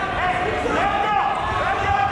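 Several voices shouting over each other in a large echoing gym during a wrestling bout, with low thumping from the mat.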